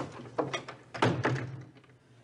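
A panelled wooden door being opened and pulled shut: a string of knob and latch clicks and knocks over about a second and a half, the loudest about a second in.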